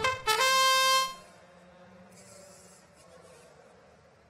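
Match-start horn from the robotics competition's field control system: one steady, horn-like electronic tone lasting just under a second, signalling the start of the autonomous period. Faint hall background follows.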